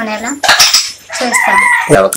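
A rooster crowing loudly close by: a rough opening burst, then a long held note that wavers a little before breaking off just before the end.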